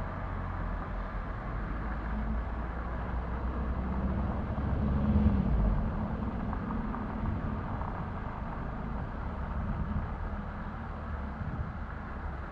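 Outdoor seafront street ambience with a steady low rumble, and a car driving past that swells and fades about five seconds in.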